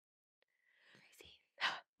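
A single whispered word, "crazy", about one and a half seconds in, with faint breath before it and near silence around it.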